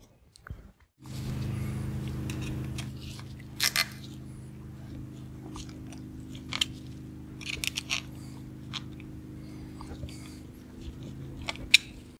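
Hand tools and small metal parts of outboard vapor separator tanks clicking and clattering on a workbench as parts are moved from one tank to the other, a few sharp clicks spread out with the loudest near the end. Under it, from about a second in, a steady low hum with several tones.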